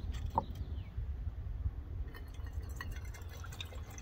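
Water poured from a metal bottle into a stainless-steel Stanley press pot, splashing and trickling as the pour gets going about two seconds in.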